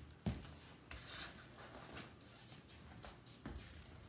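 Faint handling sounds of balls being gathered from a plastic laundry basket and footsteps on a wood floor, with one short thump just after the start and a few soft knocks later.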